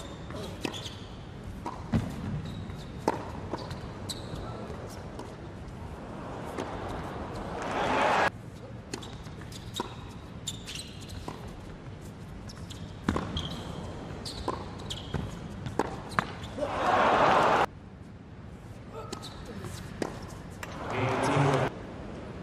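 Tennis rally: a ball struck by rackets and bouncing on a hard court in sharp single hits. Crowd cheering and applause swell up three times after points and cut off abruptly.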